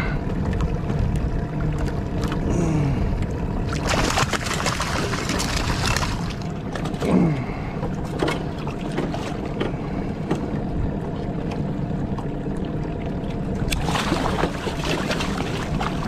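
Hooked steelhead thrashing and splashing at the water's surface beside the boat in two bursts, about four seconds in and again near the end. A boat motor hums steadily underneath.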